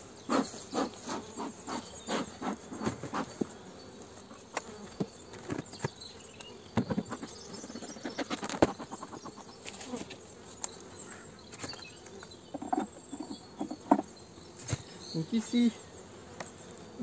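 Honeybees buzzing at an opened hive. A run of regular puffs from the smoker's bellows comes in the first few seconds, followed by scattered sharp knocks and clicks as the cover comes off and the frames are worked, the loudest about halfway through.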